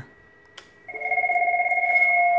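A key click on a Cisco IP desk phone, then a steady electronic tone with a fast flutter from the phones' speakers as the page group call connects and the phones answer automatically.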